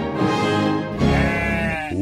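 Intro music with full, sustained chords that change about once a second, some of its notes gliding in the second half, then breaking off just before the end.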